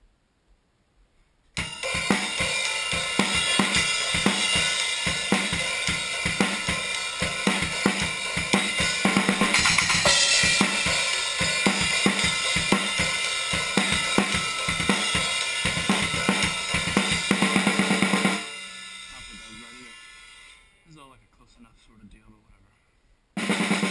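Drum kit played hard: a fast, steady beat of bass drum, snare and crashing cymbals that starts about a second and a half in and stops suddenly after about seventeen seconds, leaving the cymbals ringing out and fading over the next few seconds.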